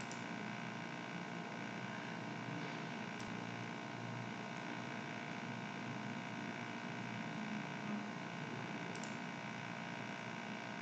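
Steady low room tone: a faint hiss with a constant hum, and a single faint click about three seconds in.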